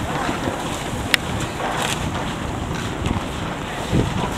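Wind buffeting the camera microphone as a steady low rumble, over the general noise of a busy train platform. A single sharp click or clink sounds a little over a second in.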